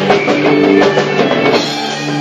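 Live rock band playing: electric guitar chords held over a drum kit, with a quick run of drum and cymbal hits through the first second and a half.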